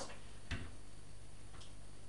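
Quiet room background with a soft click about half a second in and a fainter tick near the end.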